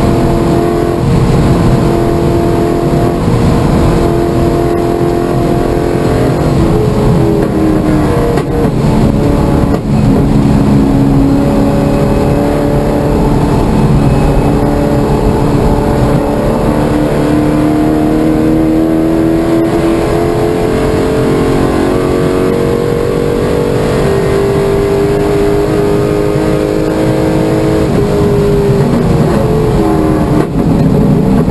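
Chevrolet C5 Corvette Z06's 5.7-litre LS6 V8 heard from inside the cabin under racing load. The engine note rises and falls with throttle, climbing slowly through the middle and dropping sharply near the end, over a rough road and wind roar.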